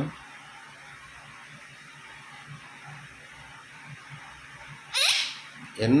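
An Indian ringneck parakeet gives one sharp, high screech about five seconds in, with low room noise before it. A short word-like vocal sound follows right at the end.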